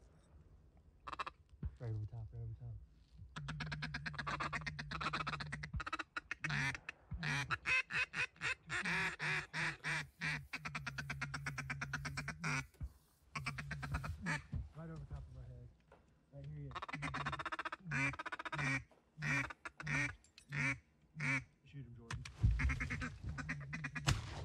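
Duck quacking in long, rapid strings of calls, several runs broken by short pauses.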